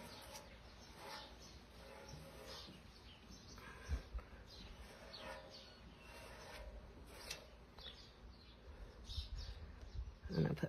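Quiet outdoor ambience with faint bird chirps, and the soft scrape of a small plastic scraper working chalk paste across a mesh stencil, with one soft knock about four seconds in.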